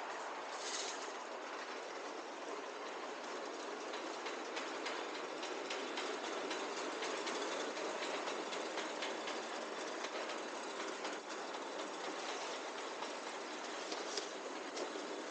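Loaded metal roll cage trolley rattling and clattering steadily on its castors as it is pushed over a tiled floor, with a short high hiss about a second in.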